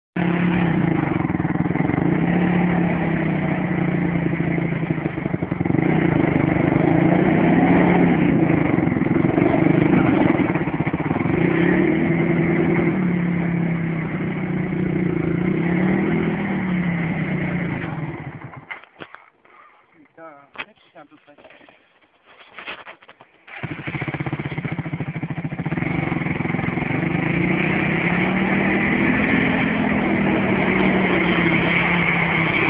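Dinli 450 quad's engine revving up and down as the quad works through deep mud, its pitch rising and falling. A little past the middle it drops much quieter for about five seconds, then picks up again.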